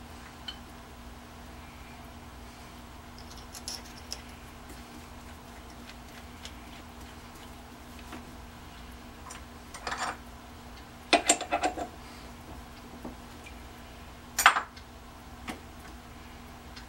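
Short metal clicks and clinks of a twist drill bit being handled and fitted into a lathe's tailstock drill chuck, a few scattered at first, a quick cluster of clicks about eleven seconds in and one sharp click near the end.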